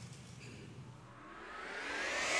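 Faint room tone, then from about a second in a rising whooshing sweep that climbs in pitch and grows louder: the swell opening a video's soundtrack.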